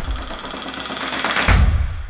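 Intro music: a quieter stretch after the driving beat, then one heavy drum hit about a second and a half in that dies away.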